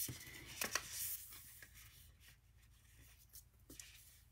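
Paper pieces and a grid stamping mat sliding and rustling on a tabletop as they are handled, with a few small taps in the first second or so, then only faint handling noise.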